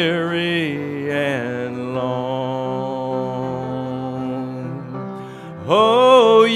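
A hymn sung by a man's voice with acoustic guitar accompaniment. A long note is held at the end of the verse, and the chorus begins just before the end.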